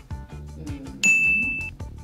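A single bright 'ding' sound effect about a second in, the correct-answer chime for a point being awarded, over faint background music with a steady beat.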